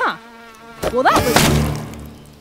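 Cartoon sound effects: an insect buzzing, then a sharp hit a little under a second in. A loud splat follows and fades out as a bug bursts against someone.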